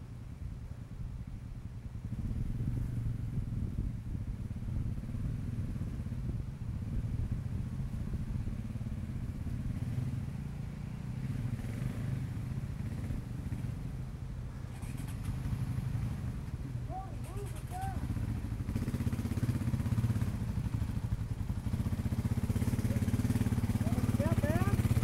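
Dirt bike engines running at idle and low revs, a steady low chug, growing louder near the end as a second bike rides up close.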